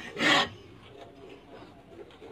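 A bamboo rat struggling while it is grabbed by the tail: one short, loud rasping noise about a quarter second in, then faint scuffling.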